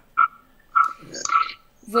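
A person's voice in short, broken-up hesitation sounds, three or four brief bursts with pauses between them, the last an "eh".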